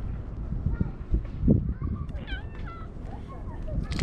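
Stray cats meowing, several short wavering calls in the middle, over a low rumble of wind and handling on the camera's microphone, with a dull bump about a second and a half in.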